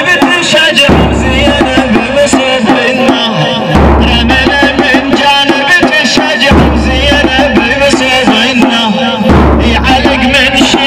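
A male reciter chanting a Shia latmiyya (mourning elegy) through a loudspeaker system, backed by drum beats with a deep bass pulse that returns every few seconds.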